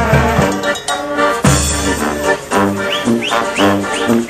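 A street brass band playing live, with a sousaphone carrying the bass line in short repeated notes under the horns and reeds.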